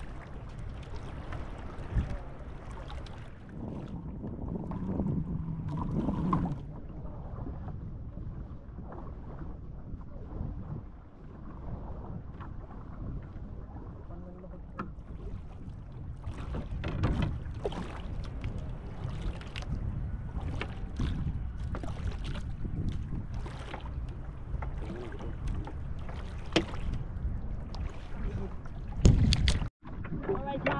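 Water and wind noise around a small outrigger fishing boat at sea, with scattered knocks and splashes that come more often in the second half and one loud one near the end.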